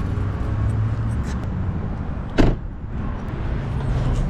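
A car door slammed shut once, a loud thud about halfway through, over a steady low outdoor rumble.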